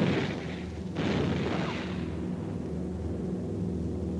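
Two flak shells bursting, one right at the start and one about a second in, each dying away over about a second, over the steady drone of a B-17's four radial engines.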